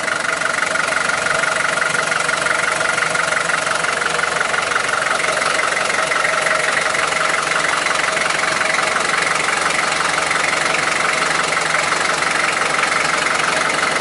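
Land Rover Series III 88's reconditioned four-cylinder engine idling steadily at standstill.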